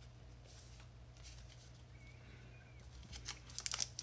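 Quiet handling of trading cards, then near the end the crinkling of a plastic booster pack wrapper being picked up, growing louder.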